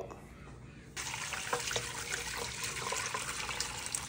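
Strained seafood stock poured from a pot through a cheesecloth-lined mesh strainer into a pot below: a steady pour of liquid that starts about a second in.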